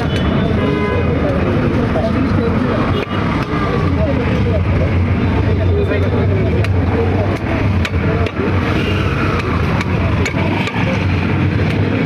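Busy outdoor market ambience: background chatter of several voices over a steadily running vehicle engine, with sharp knocks now and then.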